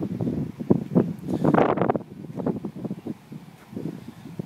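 Wind rustle on a phone microphone with irregular soft knocks from walking on pavement, busiest in the first two seconds with a brief hissing swell, then quieter.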